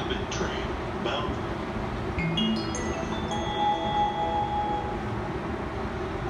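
Station platform approach chime over the public-address speakers: a few electronic chime notes stepping upward, starting about two seconds in and ringing on for a few seconds. It signals a train approaching the platform. Steady station background noise runs underneath.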